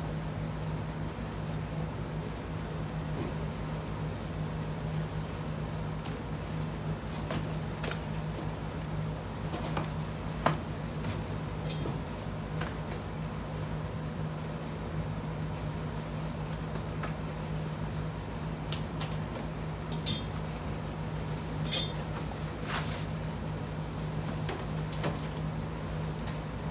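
Scattered metallic clinks and knocks of a wrench, bolts and hardware against a sheet-steel tool cart as it is bolted together, a few sharper knocks standing out, over a steady low hum.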